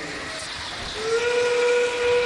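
FRC field's endgame warning: a recorded steam-train whistle played over the arena speakers, signalling 30 seconds left in the match. It starts about a second in as one steady held tone.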